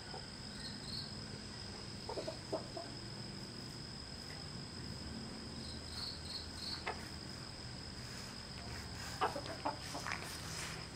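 Chicken clucking: a few short calls about two seconds in, one near seven seconds, then a quick run of clucks near the end. A steady high insect drone sounds underneath.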